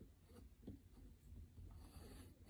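Faint scratching of chalk drawn in short, repeated strokes over paper on a chalkboard, over a low steady room hum.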